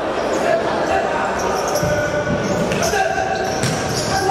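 Futsal being played on a hard indoor court: the ball is struck and bounces several times while players shout. The sound echoes around a large sports hall.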